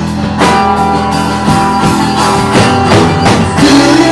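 Live band playing an instrumental passage between sung lines: strummed guitars holding chords over a drum kit that strikes roughly once a second.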